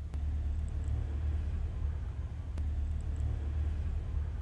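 A low, steady rumble that swells slightly at the start and then holds, with a couple of faint clicks.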